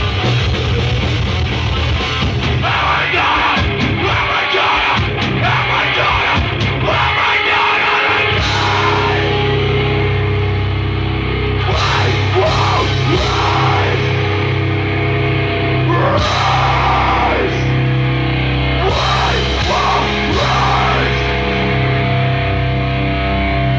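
Loud live heavy rock played by a band on electric guitars and drums, with shouted vocals coming in and out.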